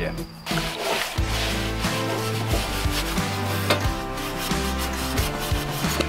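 Scrubbing of a greasy metal gas-grill part under soapy water, a steady rubbing. Background music with held notes plays throughout.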